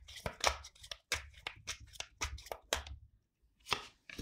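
A tarot deck being hand-shuffled: a quick, irregular run of soft card taps and slaps for about three seconds, then one more tap near the end as a card is laid down on the table.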